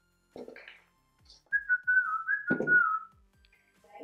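A whistled tone, wavering slightly around one pitch for about a second and a half, over faint background music with a steady soft beat. There is a short thud partway through the whistle.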